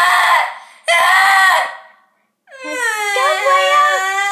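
A young girl screaming: two short, loud shrieks, a brief pause, then one long, high-pitched wail held steady from just past halfway.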